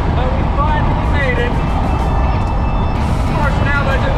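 A song with a singing voice plays over the steady low road and engine rumble of a Jeep in motion, heard from inside the cabin.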